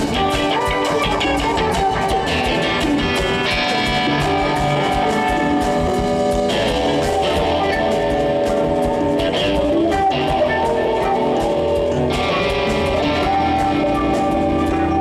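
Live funk band playing an instrumental passage: electric guitar and bass guitar over a drum kit, loud and steady.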